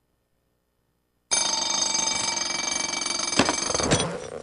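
Near silence, then about a second in a loud ringing made of many steady high tones starts suddenly and holds, with a sharp knock near the end.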